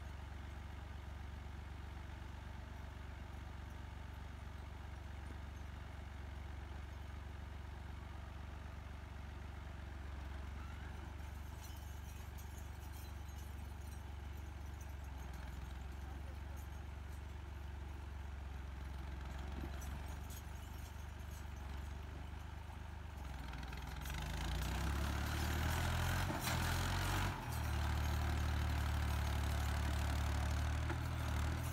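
Tractor diesel engine running at a low, steady idle, then revving up about three quarters of the way through as the tractor pulls forward up a steep rocky slope, the engine note dipping for a moment just after before holding loud and steady under load.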